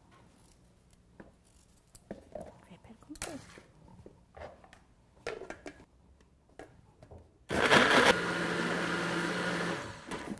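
A few faint knocks and taps, then about seven and a half seconds in an electric kitchen blender starts and runs steadily for about two seconds, puréeing raw carrot pieces, cutting off just before the end.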